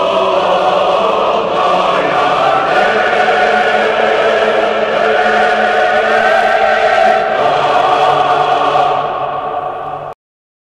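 A choir singing slow, held chords in a chant style. The chord shifts about a second and a half in and again about seven seconds in. It fades a little near the end, then cuts off abruptly.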